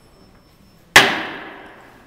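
A single sharp, loud knock about a second in, dying away over about a second.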